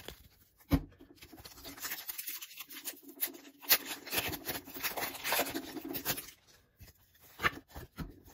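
Foil wrapper of a Pokémon booster pack crinkling and tearing as it is ripped open: a crackling run of several seconds. A single click comes near the start and a few clicks near the end.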